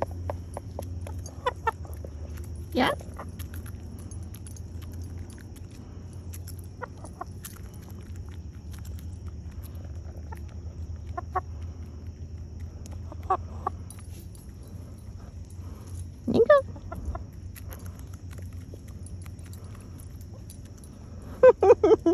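Hens clucking now and then while pecking feed from a hand, with one clearer call past the middle, over a steady low background hum.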